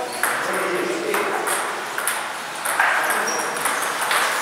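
Plastic table tennis ball clicking sharply off bats and the table as play resumes, a few hits roughly a second apart, each ringing briefly in a bare, echoing hall.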